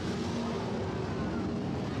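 Sprint car engines running as the field circles the dirt oval under caution, a steady drone without a clear rise or fall.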